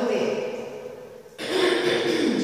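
A woman speaking: the voice runs on in short phrases with a brief pause past the middle.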